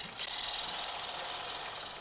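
Steady hiss and noise of an old film soundtrack in a pause between narration, with no distinct sound standing out.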